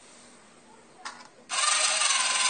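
Small DC gear motors of a model car chassis start up suddenly about one and a half seconds in and run steadily with a noisy mechanical whir.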